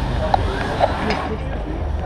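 Indistinct voices over a steady low hum, with a few short clinks, the sharpest about a third of a second in and just under a second in.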